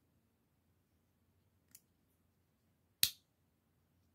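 Elite Edge stiletto pocket knife's blade mechanism clicking: a faint click a little under two seconds in, then one sharp loud snap about three seconds in as the blade snaps into place.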